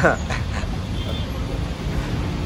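Fuel dispenser pumping fuel: a steady low hum and rush with no break.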